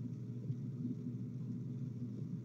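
Steady low hum and rumble of background noise coming through an open microphone in an online voice chat room, with no other sound.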